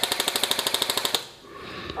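Airsoft gun firing a rapid full-auto burst of about twenty sharp shots in just over a second, then stopping.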